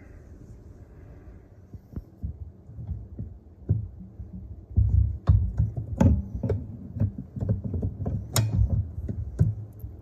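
Steel box-end wrench on a bolt head: after a few quiet seconds, a run of sharp metal clicks and clinks with low thumps as the wrench is fitted and worked on the bolt.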